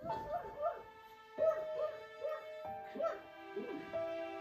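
A dog making short, high cries that rise and fall in pitch, two or three a second, over piano background music.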